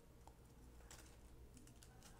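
Near silence with a few faint crinkles and light ticks from a thin clear plastic bag being handled by the fingers.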